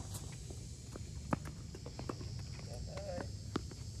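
Tennis ball struck by rackets and bouncing on a hard court during a rally: sharp pops about every second and a half, the loudest just over a second in, with footsteps on the court between them.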